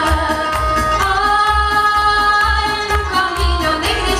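A woman singing a Romanian folk song into a microphone over amplified keyboard accompaniment with a steady bass beat, holding one long note through the middle.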